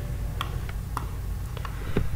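A few faint, irregular clicks from a computer mouse and keyboard in use, over a low steady hum.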